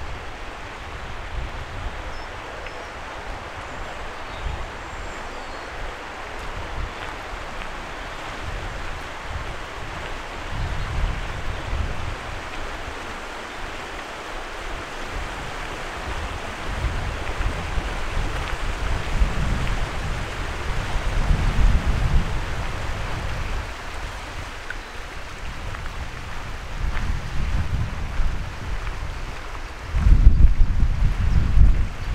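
Steady rush of a river flowing, with gusts of wind buffeting the microphone in low rumbles that swell several times, most strongly a little past the middle.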